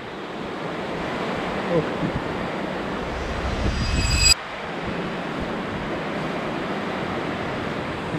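Surf washing against a rocky shore, with wind buffeting the microphone. A louder low rumble builds about three seconds in and cuts off abruptly just after four seconds.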